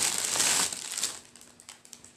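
Packaging crinkling as an item of clothing is pulled out of it: loud for about the first second, then dying down to a few faint handling clicks.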